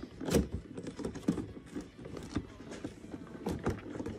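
Clear plastic seed-starting tray and humidity dome being handled and moved, giving scattered light knocks, clicks and rattles of hard plastic. One sharper knock comes just after the start and a few more near the end.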